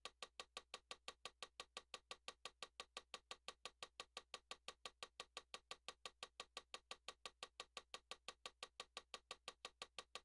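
Faint, evenly spaced ticking, about five clicks a second, keeping a steady beat over near silence.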